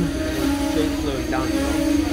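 Passenger train rolling slowly along the platform as it pulls in, with a steady low humming tone, and people's voices in the background.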